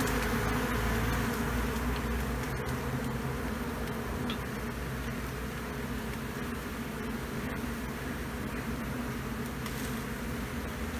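A honeybee swarm buzzing steadily: a dense, many-voiced hum of bees flying around the hive box and the holly bush. It is a little louder in the first couple of seconds, then settles.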